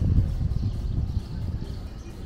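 Wind buffeting the microphone: an uneven low rumble that eases off toward the end.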